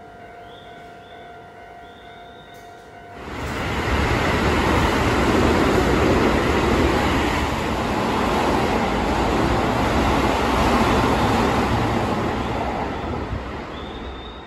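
A passing train running through the station platform without stopping: its wheel-on-rail and running noise rushes in about three seconds in, stays loud for around nine seconds, and dies away near the end.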